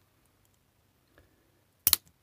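A faint tick about a second in, then one sharp snap near the end: side cutters breaking one of the little moulded rivets holding the sensor board in a car clock-spring module.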